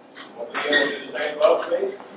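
Indistinct talk of several people in a meeting room, with sharp clinks and knocks mixed in.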